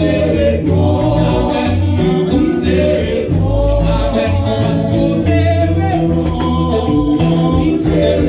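Gospel worship team of women's voices singing together into microphones over a live band: an electric bass holding long low notes and a drum kit with cymbals keeping time.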